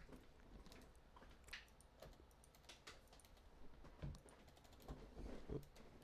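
Faint typing on a computer keyboard: irregular, scattered keystrokes.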